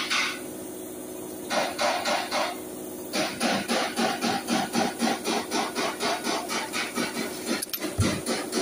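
Hand ratchet with a socket working a wheel lug nut, clicking in quick rhythmic strokes of about four to five a second. There are two short runs, then a steady run from about three seconds in that stops just before the end.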